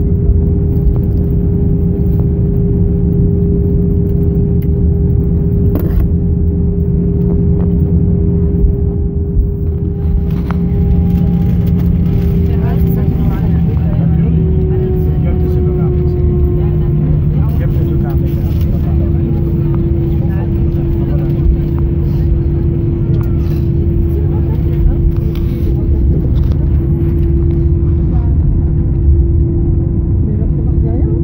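Jet airliner cabin noise during the landing rollout: a loud, steady rumble from the engines and the running gear. The engine tone steps down in pitch about halfway through as the engines wind down.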